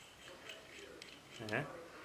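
Faint clicks of small steel parts being handled: a roller-bearing steering center pin kit, with its bearing cups and lock nuts, turned over and picked up by hand.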